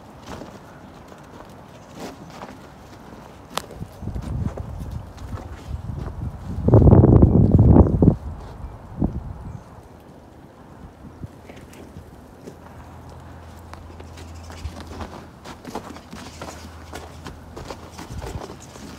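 Outdoor ambience on a bridge: scattered light knocks and taps like footsteps and handling of the phone, and a loud low rumble lasting about a second and a half about seven seconds in, most likely a gust of wind buffeting the microphone. A faint steady low hum runs through the second half.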